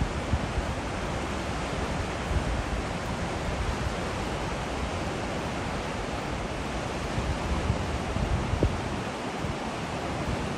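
Steady rushing of the Potomac River's whitewater rapids, with wind buffeting the microphone in low rumbles now and then.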